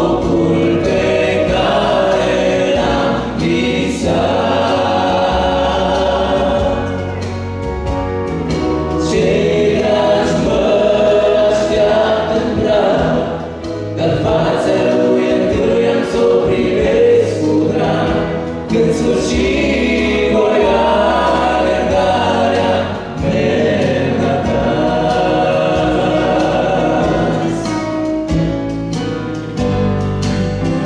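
Large church choir singing a hymn, full and continuous, over a steady low accompaniment.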